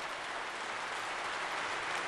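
Steady applause from a large crowd of lawmakers.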